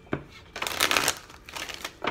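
A deck of tarot cards being shuffled by hand: a short tap at the start, then two bursts of rapid card flicking, the longer one about half a second in.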